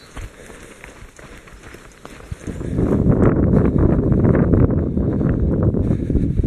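Running footsteps on a grassy trail, faint at first. From about two and a half seconds in, loud, uneven wind noise buffets the microphone and covers them.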